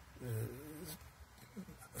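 A man's brief, quiet murmured hesitation sound, low and voice-pitched, lasting about half a second, followed by faint mouth noises.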